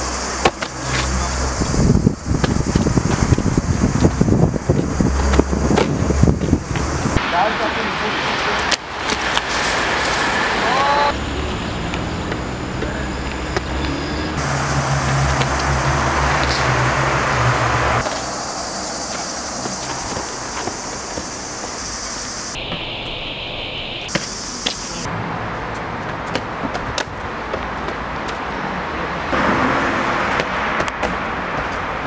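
Outdoor background noise of traffic and wind on the microphone, changing abruptly several times, with footsteps, shoe scuffs and landing impacts of a freerunner on concrete walls and ground, densest in the first few seconds.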